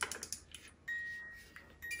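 Small music box being wound by its key, a quick run of ratchet clicks, then its comb begins to play: single plucked notes ringing out about a second apart, kind of slow.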